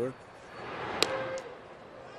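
Ballpark crowd noise swelling as a pitch is delivered, with one sharp crack about a second in as the ball reaches the plate and a fainter click just after.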